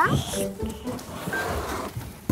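Young children's voices, short snatches and vocal noises rather than clear words, over light background music.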